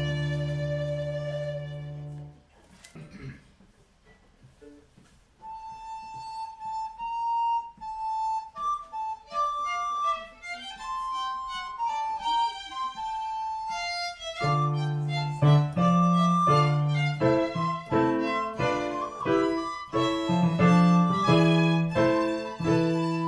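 Early Baroque chamber music for violin, recorder and basso continuo. A held closing chord ends about two seconds in, and after a short pause a single high melody line plays alone. The bass continuo and fuller harmony join in a little past the middle.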